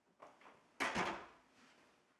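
A soft knock, then about a second in two loud thumps in quick succession that die away quickly, like something being bumped or set down on a desk.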